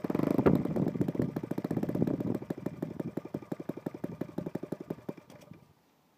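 Saito FA-72 single-cylinder four-stroke model aircraft engine, converted to spark ignition, catching on a hand flip of the propeller. It runs strongly for about two seconds, then falters, its firing slowing and weakening until it dies shortly before the end.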